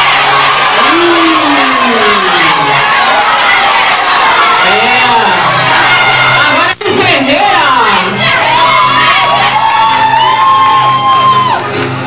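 A crowd cheering, with many high shouts and whoops rising and falling over each other, greeting a contestant whose name has just been announced. The sound cuts out for an instant about seven seconds in.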